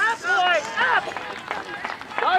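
Sideline spectators yelling encouragement to the players, a string of short, high-pitched shouts.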